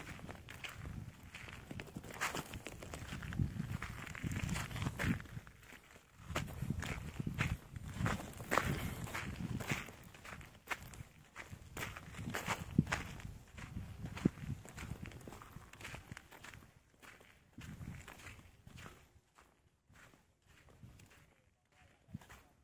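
Footsteps on loose volcanic sand and gravel, an irregular run of short crunches with low rumbling handling or wind noise. The steps thin out and die away in the last few seconds.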